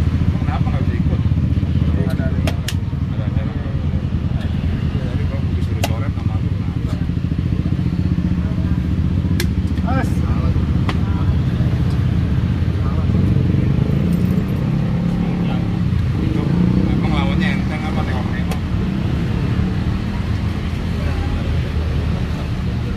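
A steady low rumble under indistinct background voices, with a few sharp clicks of plastic chess pieces being set down and chess-clock buttons being pressed.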